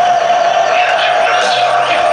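Loud electronic dance music from a DJ set over a club sound system, a steady held synth tone running under it, with crowd voices shouting over the music.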